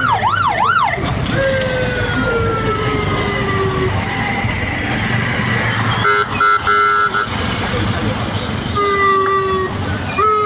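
Police vehicle siren yelping in fast up-and-down sweeps, about three a second, that stops about a second in. It is followed by long electronic tones falling slowly in pitch, a short broken honk about six seconds in, and another falling tone near the end, all over a steady rumble of vehicles.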